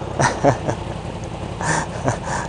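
A man laughing in short bursts over a motorcycle engine idling with a steady low hum.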